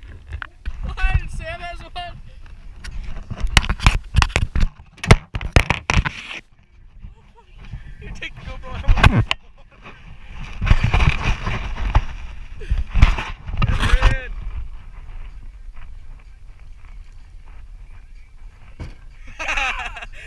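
Indistinct voices, with clusters of sharp knocks and thumps a few seconds in and again briefly later on.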